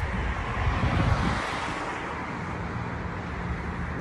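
A car going past on a wet road: a rushing tyre hiss with a low rumble that swells over the first second or two and then slowly fades.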